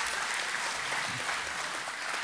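Audience applauding, a steady clapping.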